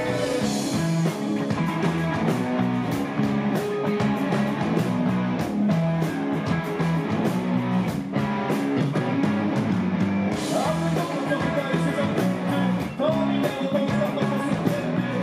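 Rock band playing live: electric guitar and bass guitar over a drum kit, with a steady beat of drum and cymbal hits.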